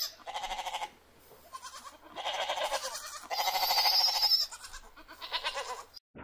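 Goats bleating: about five quavering calls one after another, each lasting half a second to a second.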